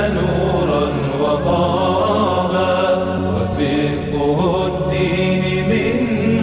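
Closing theme music of a TV programme: a chant sung by layered voices over steady low sustained tones.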